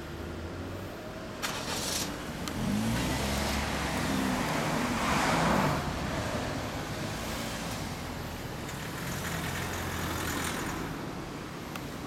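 Motorcycle engines revving and pulling away, their pitch rising and falling, loudest about five and a half seconds in, then easing to a steady hum with a smaller swell near the end.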